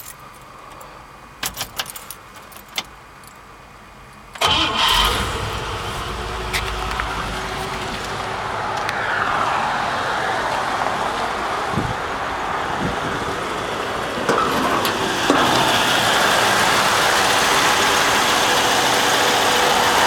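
A few clicks at the ignition, then the 1954 Cadillac's 331 V8 catches about four seconds in on a cold start and settles into a steady idle. It grows louder near the end.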